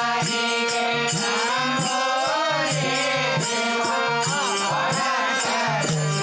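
Kannada devotional bhajan: a voice singing a wavering melodic line over percussion beating about three times a second, with a low sustained note underneath.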